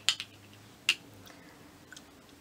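A few short, sharp clicks of small objects being handled: one at the start with a smaller one just after, another a little under a second in, and a faint tick near the end, over a low steady hum.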